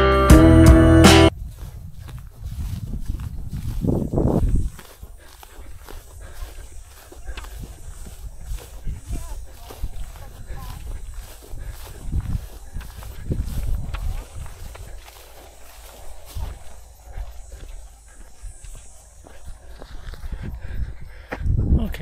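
Acoustic guitar music that cuts off about a second in, followed by a runner's footsteps on a dirt trail, heard through a handheld camera with uneven low rumble on its microphone and a louder swell a few seconds in.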